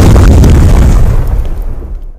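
Explosion sound effect: a loud, sustained rumble with crackle, dying away near the end.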